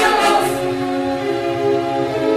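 Dramatic background music score of long, held chords with a choir-like vocal sound.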